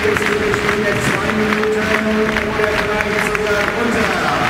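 Crowd noise in an indoor arena, with music over the public-address system holding long steady notes.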